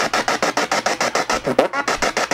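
P-SB7 spirit box sweeping through radio stations, played loud through an old JBL speaker: a fast, even chopping of static and radio fragments about eight times a second. A brief pitched radio snippet cuts through about three-quarters of the way in.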